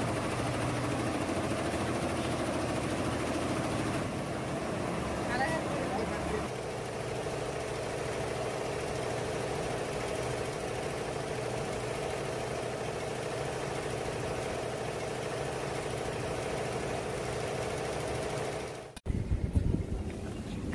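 Multi-head computerized embroidery machine (Tajima) running, its needles stitching in a steady, dense mechanical clatter and hum. The sound changes character slightly twice and cuts off suddenly near the end.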